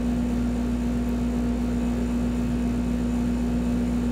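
Steady room hum: a constant low drone with one unchanging pitched tone running through it, no other events.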